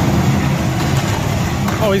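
John Deere 310K backhoe loader's diesel engine running steadily under load as its lowered front bucket pushes mud and crop debris across concrete.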